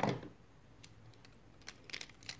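Nearly quiet room with a few faint, scattered clicks, after the tail of a spoken word at the start.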